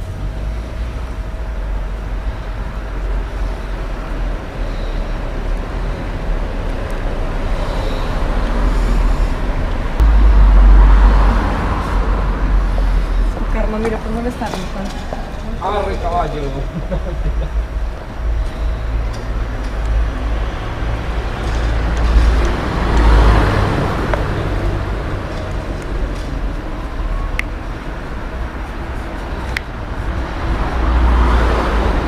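Road traffic on a city street: a steady low rumble of passing vehicles, loudest about ten seconds in.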